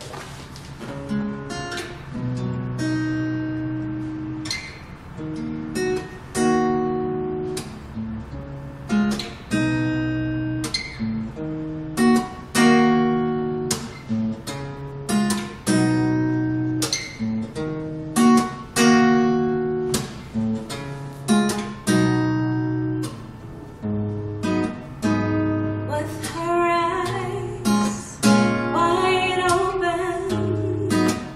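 Steel-string acoustic guitar playing a slow run of chords that ring on between strokes. A woman's voice begins singing about four seconds before the end.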